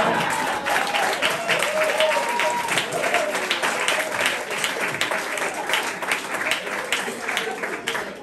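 Audience applauding in a small club, a dense patter of hand claps mixed with laughter and scattered voices.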